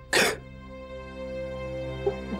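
Background music of steady held tones, with one short breathy sob from a crying boy a moment in.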